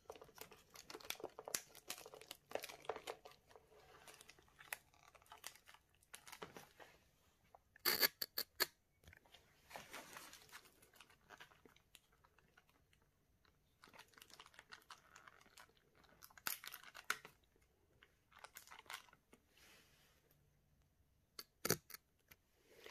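Clear plastic film crinkling and tearing as it is peeled off a thin cast resin bowl where hot glue holds it. It comes away in irregular crackly bursts, with louder clusters about eight and ten seconds in and again near the end.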